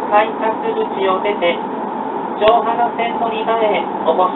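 A Japanese PA announcement giving transfer directions to the Johana line, over the steady running noise inside a W7 series Shinkansen car. There is one sharp click about halfway through.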